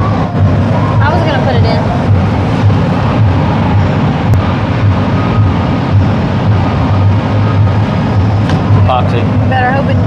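Old Chevrolet C60 dump truck's engine idling steadily: a constant low, even hum.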